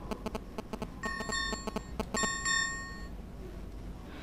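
Two short electronic chimes, each just under a second long, about a second apart, over a run of rapid faint clicking.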